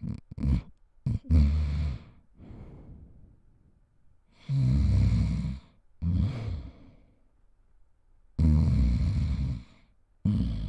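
A person snoring: two short snorts at the start, then about four longer snores of a second or so each, with pauses between.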